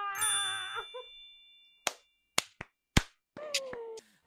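A bell-like ding that rings out at the start and fades over about a second, followed by a few sharp, separate clicks.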